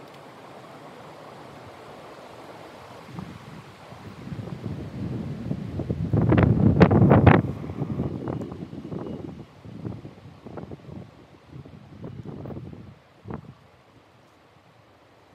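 Wind buffeting the microphone in irregular gusts, building to the strongest gust about halfway through and then breaking up into smaller puffs that die away near the end.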